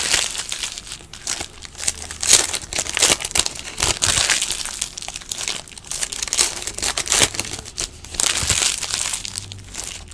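Foil trading-card pack wrappers crinkling and tearing as they are ripped open by hand, in a run of irregular crackly bursts.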